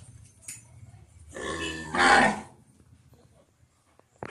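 A Gir cow giving one short moo, about a second long and louder in its second half.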